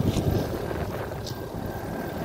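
Mercedes diesel engine of a Neoplan Skyliner double-deck coach idling, a steady low rumble.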